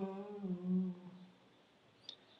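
A single voice holding a low hummed chant note, the drawn-out close of a mantra, which fades away about a second and a half in.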